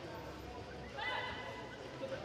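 A short, high-pitched shout about a second in, held for about half a second, over the low hum of a sports hall.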